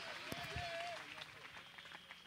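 Scattered clapping from a crowd dying away, over a faint held tone that stops about a second in.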